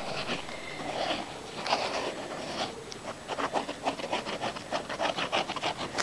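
Plastic nozzle of a glue bottle dragging and scraping across paper as white glue is squeezed out in lines. It makes a run of quick scratchy rubbing strokes that come thicker in the second half.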